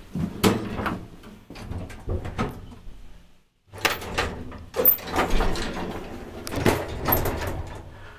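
Automatic sliding doors of a 1999 Otis roped hydraulic elevator closing after a floor button press, with a series of clicks and clunks.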